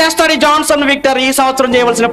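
Male speech: a preacher speaking in Telugu into a microphone.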